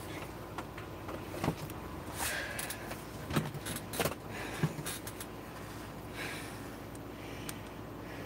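A few short knocks and clicks, with some rustling, over a steady low hum, as someone moves about off camera.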